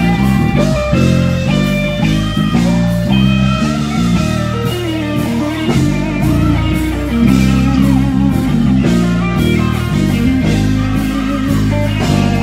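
Live gospel band playing an instrumental passage, with guitar over sustained keyboard chords and a strong bass line, and no singing.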